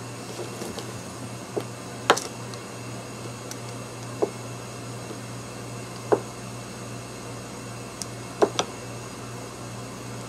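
Light, sharp taps of a paintbrush's handle end, dipped into a puddle of paint on the worktable and dabbed onto a painted gourd: about six scattered taps, two of them close together near the end. A steady low hum lies under them.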